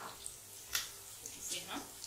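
Besan boondi deep-frying in hot oil in a steel kadhai: a quiet sizzle with a few short crackles as a slotted ladle stirs the pearls.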